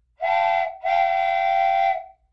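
An edited-in whistle-like tone sounds twice at one steady pitch: a short note, then a longer one ending near the end.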